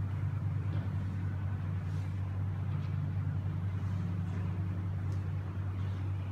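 A steady low hum that does not change, with no speech.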